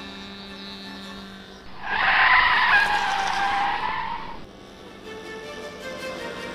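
A model aeroplane engine passing close by for about three seconds, its pitch dropping slightly as it goes past, over background music.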